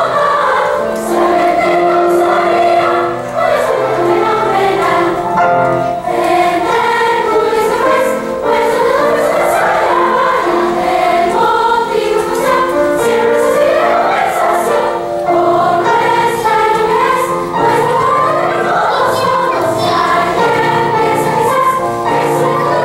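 A large girls' choir singing a polka, the voices running up and down in quick phrases over steadier held lower notes.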